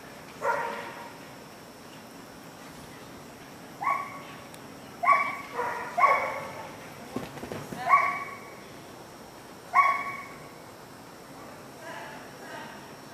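A dog barking in single barks, about seven of them at irregular intervals.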